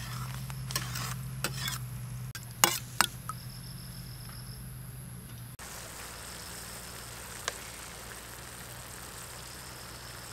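Sugar syrup boiling in a steel wok over a wood fire: a steady bubbling hiss. In the first three seconds a metal ladle clinks and knocks against the wok a few times, the two sharpest knocks about three seconds in.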